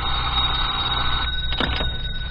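A telephone bell rings once for about a second, its tone ringing on faintly as it dies away.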